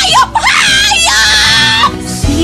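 A woman screaming and crying out, distraught: several short rising-and-falling cries, then one long held scream near the end, over dramatic background music.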